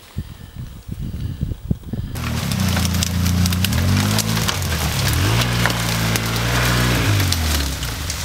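Light handling knocks for about two seconds, then a sudden switch to an ATV engine running loud, its pitch rising and falling with the throttle. Brush crackles and snaps against the machine throughout.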